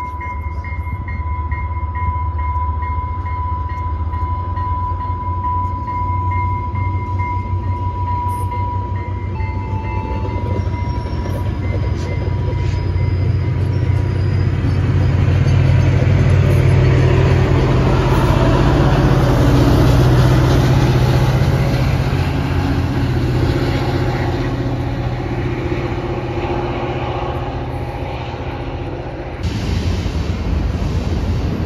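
Diesel-hauled commuter train of double-deck passenger cars rolling past on the track, a low rumble that builds to its loudest about midway and then fades as it goes by. A steady high-pitched tone sounds over it for the first third.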